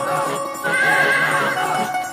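Upbeat dance-song backing music with a horse whinny over it, a short wavering high call a little after half a second in.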